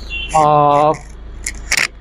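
A man's voice holding one drawn-out vowel sound for about half a second in a pause in speech, then a brief sharp click near the end, over a faint low hum.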